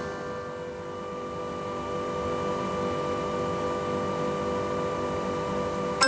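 Dutch street organ idling in the pause between tunes: a steady mechanical hum from its wind supply, with a faint held tone that comes in about a second in. The organ's next tune starts loudly at the very end.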